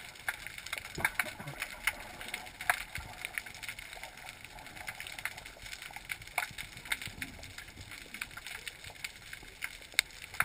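Underwater sound heard through a GoPro's waterproof housing: a muffled, faint background dotted with irregular small clicks and crackles, a few of them louder.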